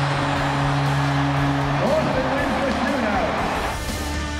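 Arena goal horn holding one steady low note over a cheering hockey crowd after the game-winning goal; the horn cuts off about two seconds in while the cheering goes on. Near the end the sound switches to rock guitar music.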